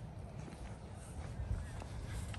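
Footsteps of someone walking on a wet, muddy path, a few soft steps, over a low rumble of wind on the microphone.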